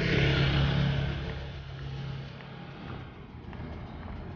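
Outdoor street ambience dominated by a motor vehicle's engine running nearby, loudest at the start and easing after two or three seconds, with faint ticks about once a second.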